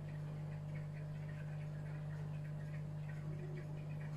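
Steady low electrical hum, with faint soft ticks scattered over it.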